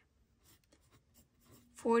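Mechanical pencil writing on a paper workbook page: faint, light scratching strokes. A spoken word comes in near the end.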